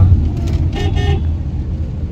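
Low, steady road and engine rumble inside a moving car's cabin, with two brief pitched tones just under a second in.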